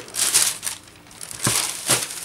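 Tissue paper crinkling and rustling as a pair of shoes is lifted out of a shoebox, in two bursts: one just after the start and one near the end.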